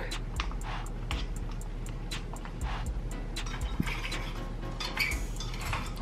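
Wooden stir stick scraping and tapping against the inside of a plastic cup while stirring glitter into epoxy resin: an irregular run of light clicks, several a second, with short scraping strokes between them.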